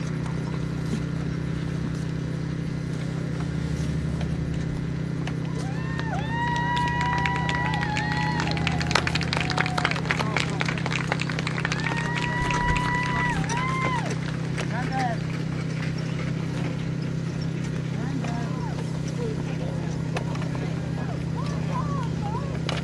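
Hoofbeats of a pair of carriage horses trotting on grass, under a steady low hum. Two spells of long, whistle-like tones sound in the middle.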